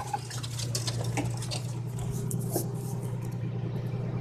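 Phone being handled and pressed against clothing, with scattered rustles and small clicks of fabric rubbing the microphone, over a steady low hum.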